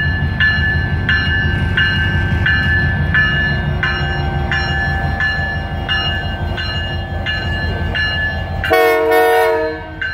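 Canadian Pacific diesel locomotive passing close by with a heavy engine rumble while its bell rings steadily, about one and a half strokes a second. Near the end the horn sounds once for about a second.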